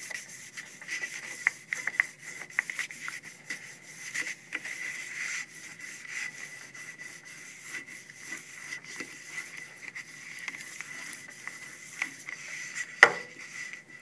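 A round plastic burnisher rubbed back and forth over the back of a sheet of watercolor paper laid on an inked printing block, pressing the ink into the paper to transfer the print. It is a continuous scratchy rubbing made of many short strokes, with one sharp click about a second before the end.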